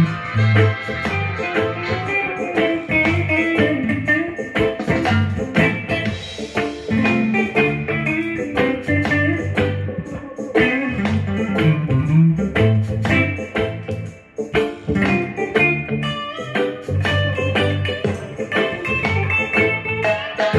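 Harley Benton single-cut electric guitar played through an amp: a bluesy run of picked single-note lead lines over a low, repeating bass line.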